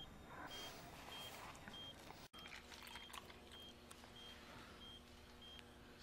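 Near silence with a faint, high, regular electronic beep about every 0.6 seconds, typical of a hospital patient monitor. The sound briefly drops out about two seconds in, and after that a faint low hum is heard.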